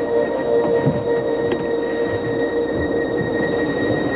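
Steady airliner cabin drone: a constant engine hum and noise with a steady whine held at one pitch, unchanging throughout.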